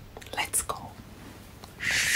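A woman whispering, with short breathy hisses and a louder whispered burst near the end.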